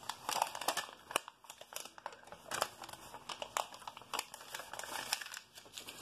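A sheet of paper crinkling and rustling in a run of irregular crackles as it is pressed and rubbed against the lips to wipe off lipstick.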